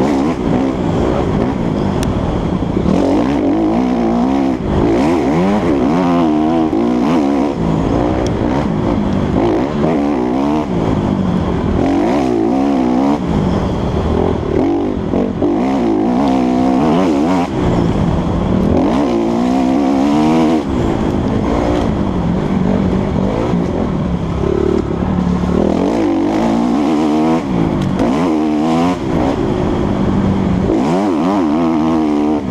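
Dirt bike engine ridden hard on a trail, its pitch rising and falling again and again as the rider accelerates, shifts and backs off.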